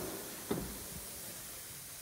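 Rear door of a BMW 3 Series saloon being opened: one soft thump about half a second in, then faint room hiss.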